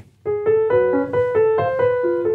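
Grand piano playing a short legato phrase, starting about a quarter second in, with notes struck in quick succession and left ringing over one another under the held sustain pedal so the harmony blends rather than sounding choppy.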